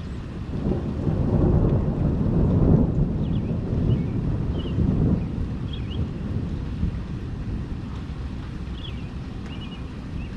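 Rolling thunder: a low rumble builds about half a second in, peaks over the next two seconds, surges once more around five seconds and then dies away, over the steady hiss of rain.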